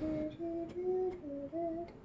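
A girl humming a tune, a run of about six short held notes that step up and down in pitch.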